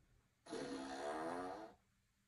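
A single long, buzzy fart lasting a little over a second, its pitch wavering as it goes.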